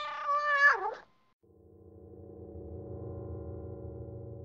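A cat's meow lasting about a second, its pitch dropping at the end, as part of the channel's logo sting. After a brief gap, a low, steady drone fades in.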